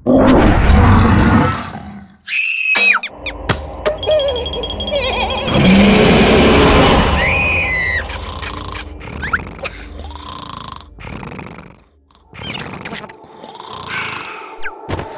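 A loud cartoon roar for about the first two seconds, then squeaky, gliding cartoon character sounds and sound effects, growing quieter after about eight seconds.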